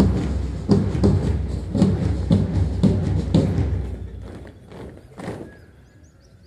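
Steady thuds about twice a second keeping marching time as columns of recruits march, fading after a few seconds. Two last thuds come about five seconds in as the marching stops.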